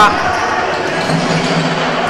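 Live basketball game sound in a sports hall: a steady mix of crowd and on-court noise, with the ball in play.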